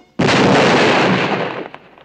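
Cartoon explosion sound effect: a sudden loud blast a moment in that dies away over about a second and a half.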